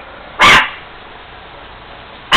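A chihuahua barks once, a short, very loud bark about half a second in.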